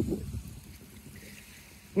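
Quiet seaside ambience: an uneven low rumble on the microphone, with faint water noise from small waves at the seawall.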